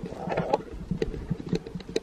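Handling noise: irregular small clicks and knocks with a brief soft rustle near the start, as hands rub in a dollop of face primer while holding the recording phone.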